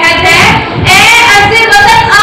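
A girl singing solo, loud, in held notes that slide between pitches, with a short break a little over half a second in.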